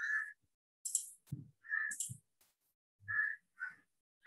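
A few brief, clipped vocal sounds, hesitation noises between words, broken up by gaps of silence.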